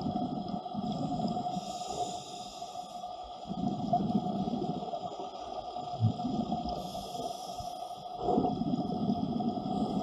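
Scuba diver breathing through a regulator, heard underwater: surges of exhaled bubbles every few seconds, with a thinner hiss of inhaling between them, over a steady faint tone.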